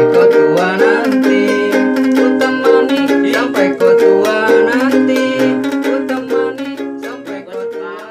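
Ukulele strummed in a steady rhythm of chords, the closing bars of a song, dying away over the last couple of seconds.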